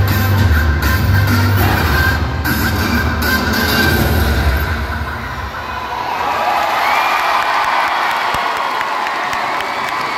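Loud recorded dance music with a heavy bass beat that stops about five seconds in, followed by a large crowd cheering and shouting as the routine ends.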